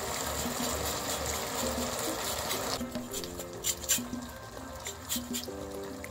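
Butter sauce simmering and sizzling in a frying pan, a steady hiss that cuts off about three seconds in, followed by a light pattering of drips as lemon is squeezed over it. Soft background music plays throughout.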